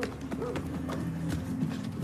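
Hurried footsteps on cobbles, quick sharp clicks, with a few faint short cries and a low steady hum underneath.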